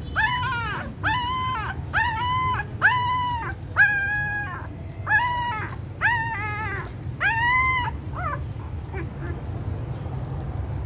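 Newborn puppies whining while they nurse: a string of about nine high whines, each rising and then falling in pitch, roughly one a second, trailing off a couple of seconds before the end.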